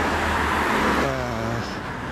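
Car passing by on an asphalt road, its tyre and road noise loudest in the first second and easing off after.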